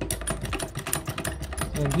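Hydraulic floor jack being pumped by its handle: rapid, dense metallic clicking and rattling, about ten clicks a second. It is the jack being pumped up with its release valve closed, part of bleeding air from the hydraulic cylinder.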